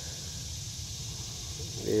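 Steady outdoor woodland background: a constant faint high-pitched hiss over a low rumble, with no distinct event.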